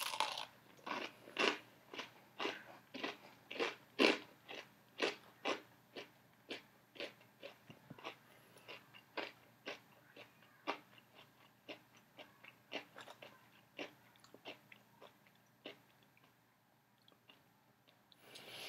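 A person biting into a crispy cornmeal-breaded fried chicken tender and chewing it. A run of short crunches comes about two a second at first, then grows sparser and fainter and stops near the end.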